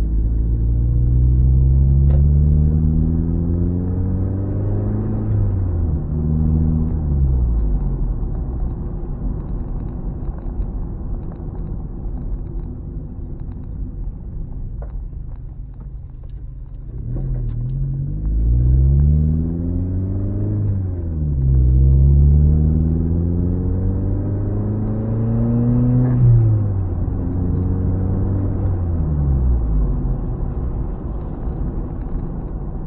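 Turbocharged car engine heard from inside the cabin, accelerating in two pulls. Its pitch climbs and drops back at each gear change or lift-off, about five seconds in and again about 21 and 26 seconds in. Between the pulls it runs quieter at low revs.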